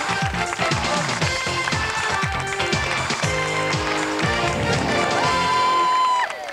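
TV game show's closing theme music playing over the end credits, with a steady beat of sliding bass notes. A single long note comes in and is held about five seconds in.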